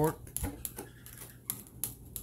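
Metal fork clinking against a glass measuring cup while stirring nectar powder into water: a handful of sharp, irregular taps.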